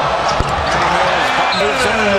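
A basketball bouncing on a hardwood court, with one sharp bounce about half a second in, over steady arena crowd noise.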